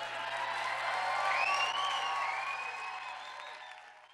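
Audience applauding and cheering, with a short whoop or two about a second and a half in; the applause swells, then fades out near the end.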